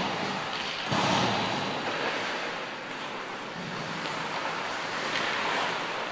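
Ice hockey skate blades scraping and carving on rink ice, with a sudden sharp sound about a second in that fades off into the scraping.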